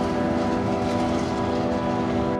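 A road train, a truck hauling several livestock trailers, passing close by at highway speed: a steady rumble of engine and tyres on the road surface.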